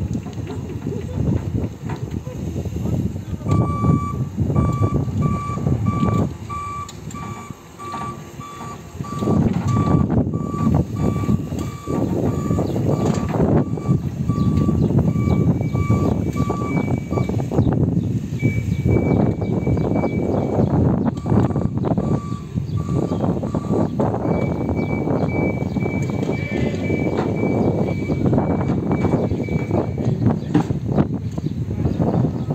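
Linde electric reach truck's warning beeper sounding in a steady run of short beeps while the truck moves. It starts a few seconds in at a lower pitch, then a higher-pitched beep takes over for the second half, over a rough rumbling noise.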